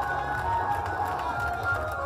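Large crowd of marchers shouting and chanting slogans together in a continuous loud din, with heavy rumble on the microphone.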